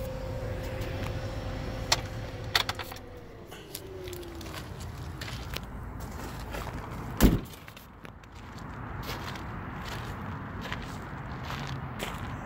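A steady whine in the Hummer H2's cabin, with a few clicks, slides down in pitch and dies away about four seconds in. About seven seconds in, the loudest sound: a single heavy thump as the SUV's door is shut.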